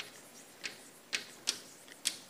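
Chalk writing on a blackboard: about four sharp, irregularly spaced taps and short scrapes as the letters of a word are written.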